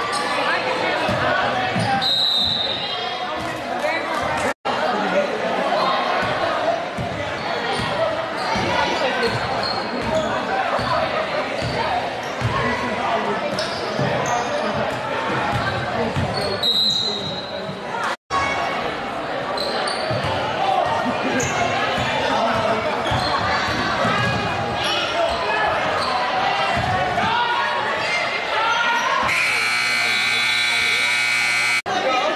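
Live basketball game in a large, echoing gym: a ball bounces on the hardwood court among spectators' voices. A buzzer sounds near the end.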